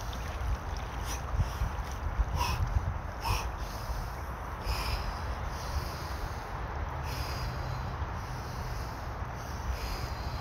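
Men breathing deeply and forcefully while immersed in cold river water, a handful of loud sharp breaths in the first five seconds or so: deliberate deep breathing to get through the cold-water shock. Steady rush of the flowing river underneath.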